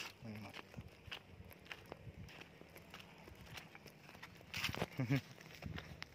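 Footsteps on a dry dirt path, irregular and fairly quiet, with a brief voice sound about five seconds in.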